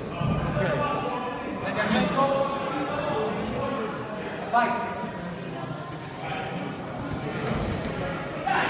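Men's voices calling out and talking in a sports hall during a kickboxing bout, with one louder call about four and a half seconds in.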